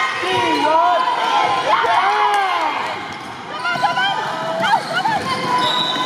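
A basketball bouncing on a hardwood gym floor during play, with sharp knocks from the ball, short squeaks from sneakers and voices calling across the echoing gym.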